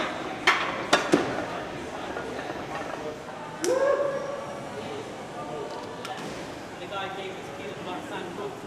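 Loaded barbell set back into the squat rack, with a few sharp metal clanks in the first second or so, then a man's voice calling out briefly, over general gym noise.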